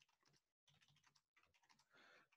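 Very faint typing on a laptop keyboard: a quick, uneven run of key clicks, barely above near silence.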